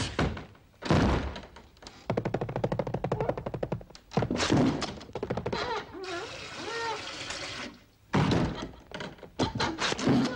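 A wooden door being thumped and rattled: a heavy thunk about a second in, a fast rattle after it, another thunk, then a wavering squeal in the middle and one more thunk near the end.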